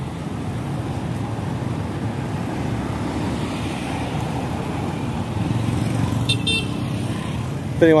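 Street traffic of motor scooters and cars passing, a steady low rumble, with a brief high-pitched horn toot about six seconds in.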